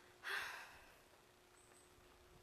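A short breathy puff close to the microphone, like a sigh or exhale, about a quarter second in and fading within half a second, over a faint steady hum.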